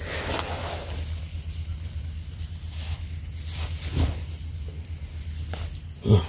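Faint rustling and crunching of dry soil and roots as hands work a fishing line at the mouth of an eel burrow, over a steady low rumble.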